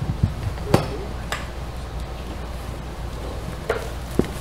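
Handling noise from a handheld microphone being switched on and passed over: a few sharp knocks and clicks, the loudest about three-quarters of a second in, over a steady low hum.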